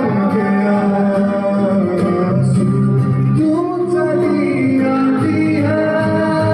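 A man singing into a microphone, accompanied by an acoustic guitar, amplified through the hall's sound system, with long held notes.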